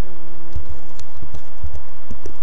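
Computer keyboard being typed on: a run of irregular key clicks and thuds as a word is typed.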